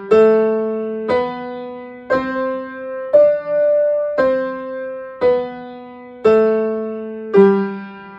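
Upright piano playing the G major five-finger scale with both hands together, an octave apart, one even note about every second. It climbs to the top note about three seconds in, then steps back down to the tonic G near the end.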